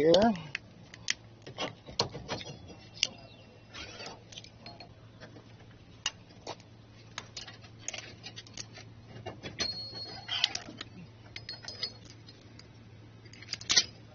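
Light metallic clinks and rattles from the steel pins and spring clips of a Blue Ox tow bar being worked loose and pulled from the base plate attachment. The clicks come irregularly, with a brief ringing now and then and a louder cluster of clinks near the end.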